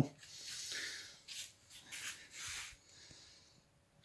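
Several faint, soft, breathy puffs of noise, fading to near silence near the end.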